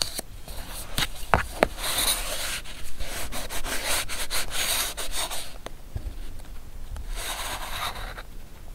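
A metal tool scraping and rubbing across paper in scratchy strokes, with a couple of light clicks about a second in. The strokes stop for about a second and a half, then start again near the end.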